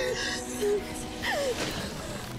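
A young woman's sharp gasp, then a short falling cry of distress, over steady background music.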